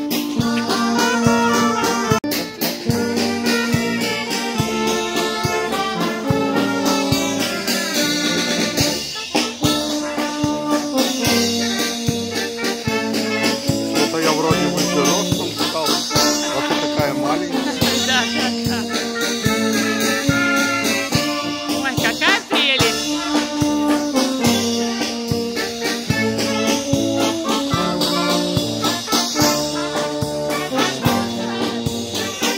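A live brass band playing a dance tune with a steady beat, brass melody over a regular bass.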